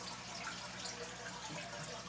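Aquarium water trickling and dripping steadily, with a faint low hum beneath it.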